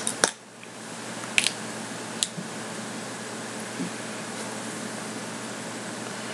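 Steady fan-like room hum through a webcam microphone. In the first couple of seconds there are a few short sharp clicks: the crunch of biting into a crisp, unripe green chili pepper.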